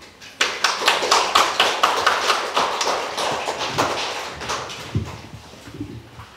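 A small audience clapping by hand, starting about half a second in and dying away after about four and a half seconds. Near the end come a couple of low bumps as the microphone on its stand is handled.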